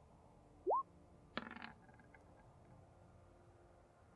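A short, clean electronic bleep that glides upward in pitch, about a second in, followed by a brief noisy scuff, over faint background hiss.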